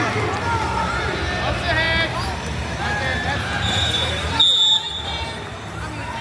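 Voices of coaches and spectators talking and calling out in an arena, with one short, sharp referee's whistle blast about four and a half seconds in.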